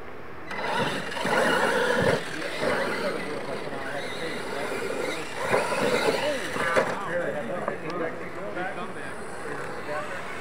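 Losi LMT radio-controlled monster trucks racing, their electric motors whining up and down in pitch, with voices of people at the track mixed in. The sound comes up sharply about half a second in.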